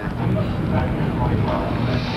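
Outdoor sound picked up by a home-video camera: a steady rumbling wash of city noise and wind, with faint distant voices in it.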